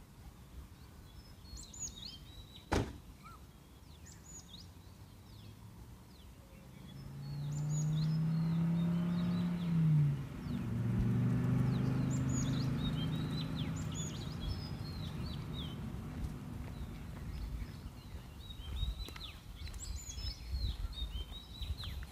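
Small birds chirping repeatedly in a garden, with one sharp click about three seconds in. From about seven seconds a low hum swells to become the loudest sound, drops in pitch around ten seconds, and fades over the next few seconds.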